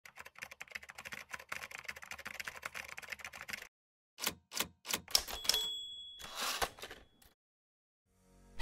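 Typewriter keys clacking in a fast run for about three and a half seconds. After a short pause come a few single keystrokes, a high bell ding and a sliding carriage return.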